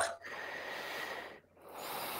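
A person breathing close to a microphone: two breaths, each about a second long.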